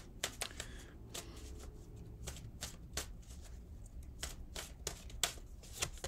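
Tarot cards being shuffled and handled by hand: a string of irregular, crisp snaps and flicks of card stock.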